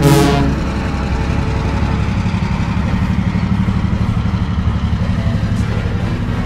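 A closing musical chord dies away in the first half-second. It gives way to a diesel engine running steadily with a fast, regular throb, in keeping with a diesel railcar.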